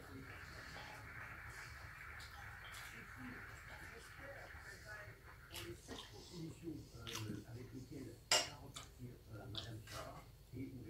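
A person eating with a knife and fork: soft chewing and small cutlery sounds, with one sharp clink of metal on the plate about eight seconds in. A faint steady hiss runs through the first half.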